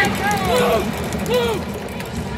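Raised voices calling out twice over the background noise of a busy hall, with a steady low hum underneath.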